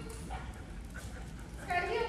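Young German Shepherd giving a short, high-pitched yelp near the end.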